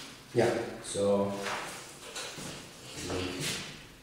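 A man's voice murmuring indistinctly in two short stretches, along with light rustles and knocks of paper being handled on a desk.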